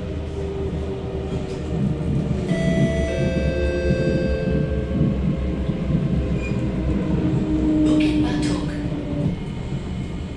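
SMRT C751B metro train running on elevated track, heard inside the car: a steady rumble of wheels on rail with electric whine tones from the traction equipment. The tones come in a couple of seconds in and fade out. A brief hissing, squealing burst comes about eight seconds in.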